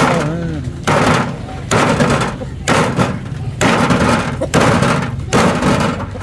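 A large knife chopping through a fibrous banana stem onto a wooden chopping board: about seven strokes, roughly one a second, each a sharp hit with a short crunching tail.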